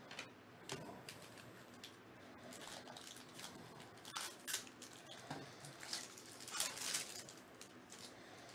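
Foil wrapper of a baseball-card pack being torn open and crinkled in the hands, as a series of short crackles and rustles, the loudest near the end.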